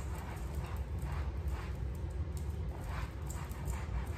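A cloth rubbing over a leather sofa in repeated wiping strokes, about two a second, over a steady low rumble.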